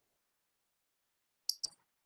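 Near silence, then two short, sharp clicks in quick succession near the end.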